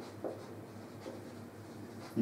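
Marker pen writing on a whiteboard: faint short strokes of the tip over a low steady hum.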